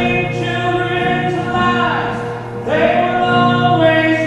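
A man singing a song live, holding long, slightly wavering notes, with instrumental accompaniment underneath; a new held note begins near the end.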